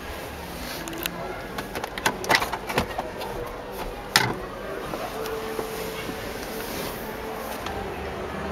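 Background voices murmuring in a large room. A run of sharp clicks and knocks comes in about a second in, loudest about two seconds in and again about four seconds in, as the vehicle's interior fittings are handled.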